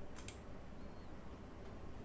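Quiet room tone with two faint, quick clicks about a quarter of a second in.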